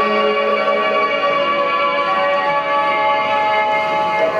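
Men's group shigin (Japanese chanted poetry) ending on a long held note that stops about a second in, leaving steady sustained tones of the instrumental accompaniment ringing on.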